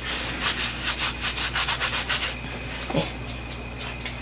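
Packaging rustling and rubbing as the makeup bag is pulled out: a quick run of scratchy rustles for about two seconds, then quieter handling.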